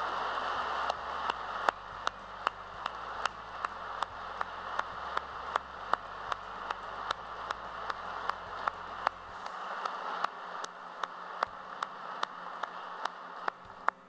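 Audience applause fading away, with one person's sharp hand claps close by at about two to three a second, which stop just before the end.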